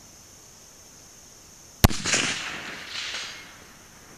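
A single shot from a scoped Howa 1500 bolt-action rifle in .30-06, about two seconds in, followed by a long rolling echo that swells again about a second later before fading.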